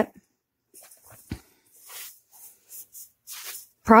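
Quiet, scattered soft squishing and rustling of wet, tea-soaked paper being pressed down in a glass pie plate, with a single light knock about a second in.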